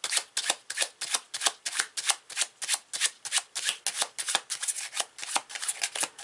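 A deck of cards being shuffled by hand: a quick, regular run of card slaps and clicks, about five a second.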